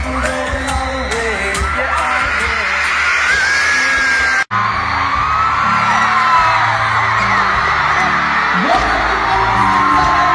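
Live pop concert audio: singing over the band, with a crowd of fans screaming throughout. It breaks off abruptly about four and a half seconds in and resumes at once, a cut between two concert recordings.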